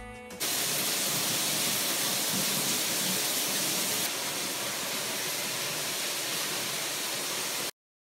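Steady hiss of running water, starting just after the last notes of music and cutting off abruptly near the end.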